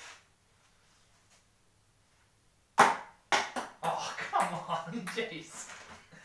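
Near silence, then a single sudden loud crack nearly three seconds in, followed by another sharp knock and a run of men's wordless laughter and exclamations as a throw misses.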